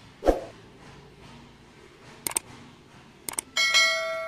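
Two quick clicks followed by a bright bell chime that rings on with a long tail: the sound effect of an animated subscribe-and-bell overlay.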